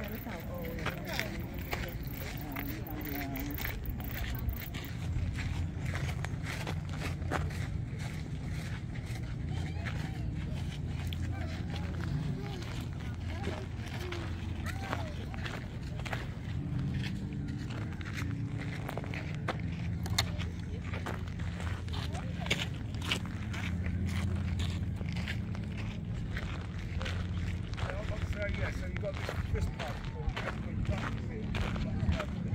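Indistinct voices of people talking in the background, over a steady low rumble, with scattered short clicks throughout.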